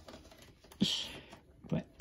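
A short laugh about a second in, then a few light clicks of hard plastic as the vacuum's extension wand and tip are handled.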